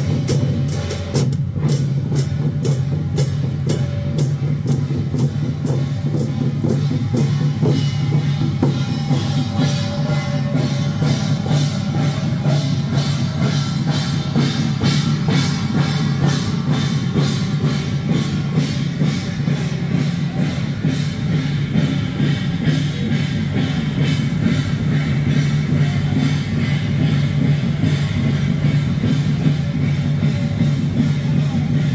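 Taiwanese temple-procession percussion troupe playing hand cymbals over drumming, the cymbals clashing in a fast, even beat without a break.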